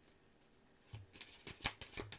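Tarot cards being shuffled by hand: a quick run of sharp card flicks and snaps that starts about a second in.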